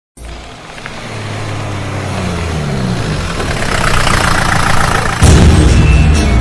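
Motorcycle engine running as the bike rides toward the camera, growing steadily louder. Near the end, loud music with a heavy low end cuts in suddenly.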